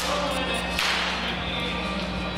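Two gunshot sound effects over background music, a smaller crack at the start and a louder one just under a second in, each with a short echo in the hall.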